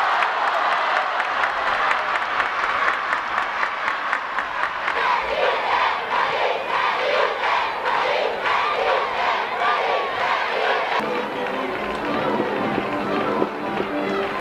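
Football crowd shouting and cheering, many voices overlapping, with a regular pulse of chanting or clapping through the middle.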